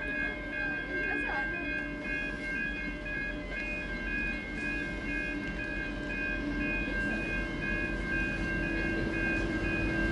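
N class diesel-electric locomotive hauling carriages approaching the station, its engine hum growing slowly louder. A steady high electronic tone with a regular pulsing beep above it sounds throughout.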